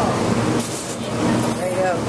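Indistinct voices over a steady background noise of many people.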